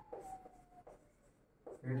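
Chalk writing on a blackboard: a few short scratchy strokes, and a thin chalk squeak that slides down a little in pitch and stops within the first second.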